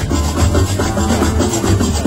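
Live Gnawa–jazz fusion band playing loudly: a fast, even metallic clatter of qraqeb (iron castanets) over a steady bass line, with drum kit and guitar.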